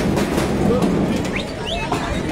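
Music with drum beats, mixed with shouting voices of a crowd.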